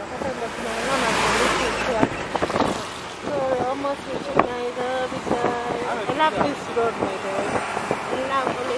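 A person's voice inside a moving car, over steady road and wind noise; a broad rush of noise swells and fades about a second in, with a few small knocks later on.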